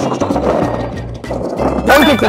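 A man voicing a homemade sound effect with his mouth, a rattly, noisy vocal sound, over background music. A loud voiced exclamation starts near the end.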